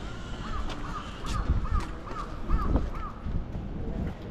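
A bird calling in a quick, even series of about eight short rising-and-falling notes, over low street background.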